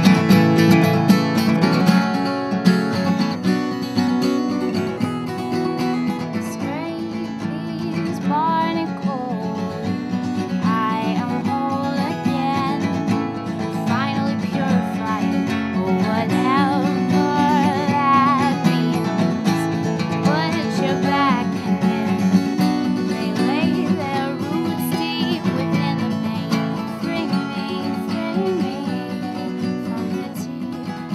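Acoustic guitar strummed steadily, with a capo on the neck; a woman starts singing over it about seven seconds in.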